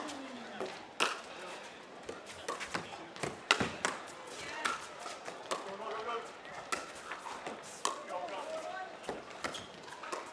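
Pickleball paddles striking the ball in a rally: a string of sharp, hollow pops, roughly one every half second to a second.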